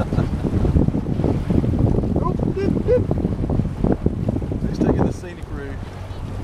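Wind buffeting the camera microphone out on open water, a heavy, uneven low rumble, with faint distant voices a couple of times.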